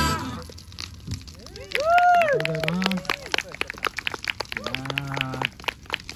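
A klezmer band's tune stops at the very start; then voices call out, with a high rising-and-falling whoop about two seconds in and a lower held call near the end, over scattered sharp cracks.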